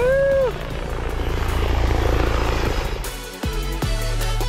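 A woman's cheer of "woohoo!", then a steady low drone under a rush of noise that swells and fades over the next couple of seconds. Music with a beat starts about three seconds in.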